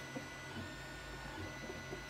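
Faint handling of a DJI Mini 3 drone's plastic body as the two battery clips are pinched, a few small ticks, over a steady low electrical hum with a faint high whine.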